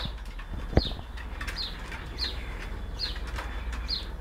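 A bird calling over and over in short, high notes that slide downward, six or seven of them, with a single sharp click just under a second in.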